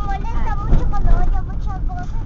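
Steady low rumble of a car's engine and road noise inside the cabin while driving, with a child talking in a high voice over it.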